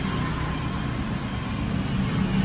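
A steady, low background rumble with a faint steady tone above it, unchanging throughout and with no speech.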